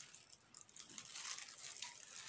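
Faint rustling and handling sounds, a few soft ticks over quiet room tone.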